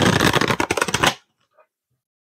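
A deck of tarot/oracle cards being shuffled by hand: a quick run of fine flicking card clicks lasting just over a second, then stopping.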